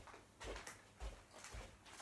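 Faint footsteps across a room floor, a soft thud about every half second.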